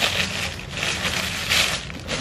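Thin plastic bag crinkling and rustling as it is handled and pulled open by hand, in irregular bursts.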